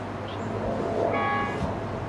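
Diesel locomotive of an approaching passenger train rumbling low and steady, with a short horn note about a second in.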